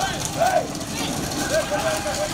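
Men shouting short, rising-and-falling calls at bulls, about half a second in and again near the end, over a low engine rumble from a tractor.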